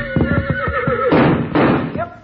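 Sound-effect horse whinny: a held, pitched neigh over a quick run of knocks like hoofbeats, then two short noisy bursts like snorts.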